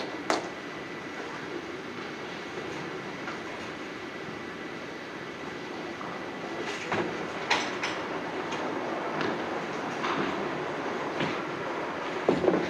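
Duckpin bowling alley din: a steady low rumble of balls rolling and lane machinery, with scattered sharp clacks, the clearest about seven to eight seconds in.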